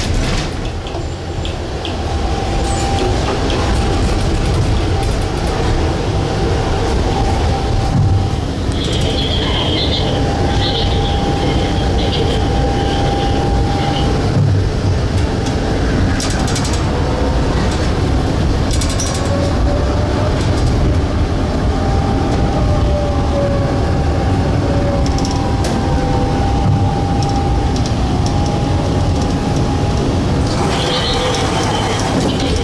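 Tram running along street track, heard from on board: a steady rumble of wheels on the rails with a constant thin whine, and a few brief high squeals about a third of the way through.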